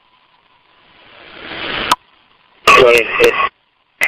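Fireground two-way radio channel: static hiss rising over about a second and cut off sharply by the squelch, then after a short gap a brief unintelligible radio voice transmission.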